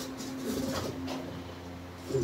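Cardboard box being handled, with a few short rustles and knocks, over a steady low hum; a low cooing call sounds in the middle.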